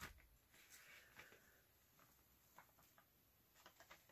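Near silence: room tone with a few faint clicks and a soft scrape of light handling.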